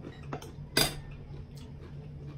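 A metal spoon clinking against a bowl while eating, with a few sharp clinks, the loudest a little under a second in, over a low steady hum.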